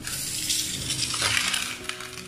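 A metal spoon scraping and spreading hot masala across a banana leaf, a rustling scrape with a few light clinks, loudest in the middle.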